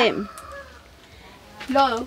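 A rooster crowing, with hens clucking.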